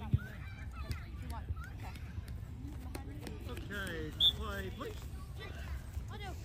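Players and spectators calling out at a distance across a soccer field, with a short, sharp referee's whistle blast about four seconds in. A single thump comes just at the start.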